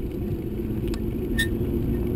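Steady low rumble of wind buffeting the microphone of a camera on a moving bicycle, mixed with tyre noise on asphalt. Two faint clicks come in the second half.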